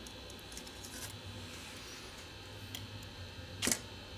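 Small clicks and ticks of metal tweezers and parts being handled on a smartphone's motherboard, with one sharper click near the end as a part is pressed into place.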